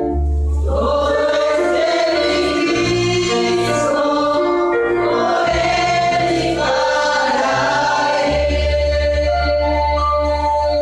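Group worship singing: many voices singing a gospel song together over instrumental accompaniment with a strong, steady bass line.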